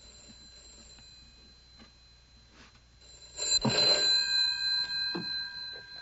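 A bell ringing with several steady tones in the film's soundtrack. It starts about halfway through, after a few quiet seconds, and fades toward the end.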